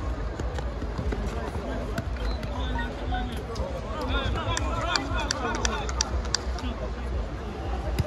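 Players' shouts and spectators' chatter around a futsal court, with a run of sharp knocks in the middle from the ball being kicked and passed.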